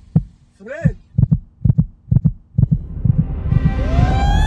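Heartbeat sound effect: paired low thuds about twice a second, quickening, with a short grunt about a second in. Near the end a swelling noise and a rising siren-like whine come in.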